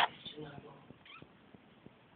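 A sharp click, then a brief low voiced call in the first second and a short higher sound about a second in, followed by faint ticking.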